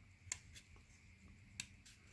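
Near silence with two faint clicks, one about a third of a second in and one about a second and a half in, from fingers handling the pleated paper element of a cut-open oil filter.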